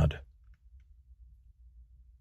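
The end of a man's spoken word in the first quarter second, then near silence: a faint low hum with a couple of faint clicks about half a second in.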